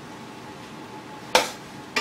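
A sharp clink of a metal spoon against a stainless skillet about two-thirds of the way in, ringing briefly, then a lighter clink at the very end, over quiet room hum.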